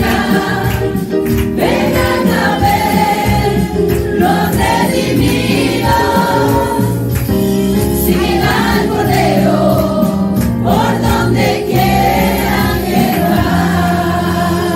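Four women singing a gospel hymn together through handheld microphones on a sound system, held sung notes over a sustained low accompaniment.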